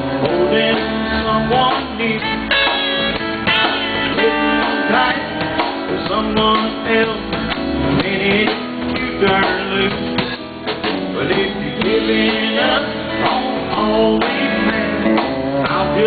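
Live country band playing an instrumental break with guitar, the vocals paused.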